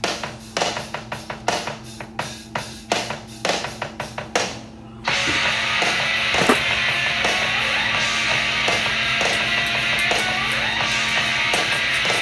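Rock music: drum hits alone for about five seconds, then the full band with electric guitar comes in suddenly and loud.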